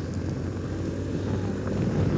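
2008 BMW R1200R's flat-twin engine running at a steady cruise on a hard-packed gravel road, under a steady low rumble of tyre and wind noise.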